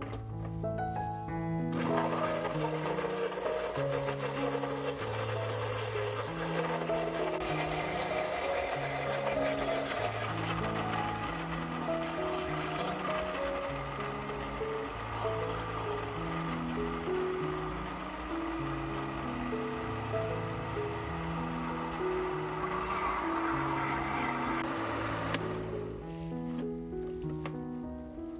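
Small electric blender running, puréeing chopped melon. It starts about two seconds in, runs steadily and stops just before the end, over background music with a plucked-sounding melody.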